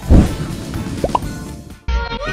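Transition sound effect over background music: a loud low hit at the start, then two short rising blips about a second in. The sound drops out briefly near the end as a new electronic music track begins.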